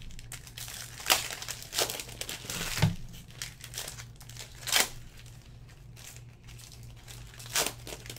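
Foil trading-card pack wrappers crinkling and tearing as packs are opened by hand, in about five short, sharp rustles over a steady low hum.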